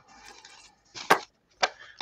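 A stack of cut paper pages tapped edge-down on the paper trimmer's board to square it: a soft paper rustle, then two sharp knocks about half a second apart.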